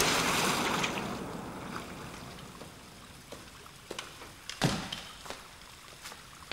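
Water pouring and spraying down, fading over the first couple of seconds to a quiet trickle with scattered drips. A sharper drip or knock lands about four and a half seconds in.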